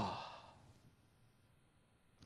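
The end of a man's loudly exclaimed word trails into a breathy exhalation that fades away within about a second, followed by near silence.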